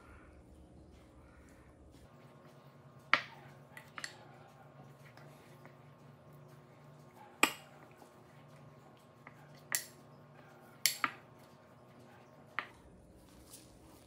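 Silicone spatula knocking now and then against a glass bowl as blueberries are tossed in flour, about seven sharp clinks spread out, over a faint background.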